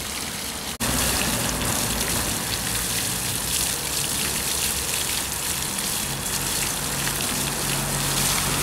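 Fountain water bubbling up from the top of an inverted concrete pyramid and splashing over its edges into the basin below: a steady rush of splashing water. The sound cuts out for a moment under a second in and then comes back a little louder.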